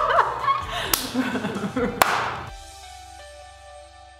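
A woman's laughter trailing off over background music, then two sharp smacks about a second apart; after them the music rings on alone and fades out.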